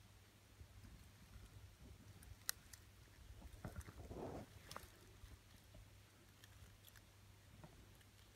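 Near silence: faint outdoor background with a low steady hum, a few faint clicks and a brief soft rustle about four seconds in.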